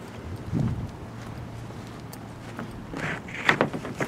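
Footsteps on grass and dirt with camera handling noise, a few soft knocks about half a second in and again near the end, over a faint low hum.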